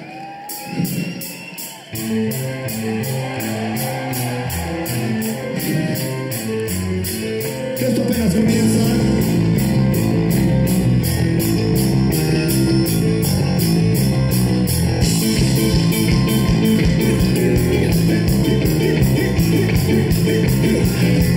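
A live rock band playing, with electric guitar over a steady drum beat. After a short lull at the start, the music comes in, and the full band gets louder about eight seconds in.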